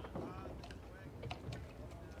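Quiet interior background: faint distant voices and a low steady hum, with a few light clicks or knocks about halfway through.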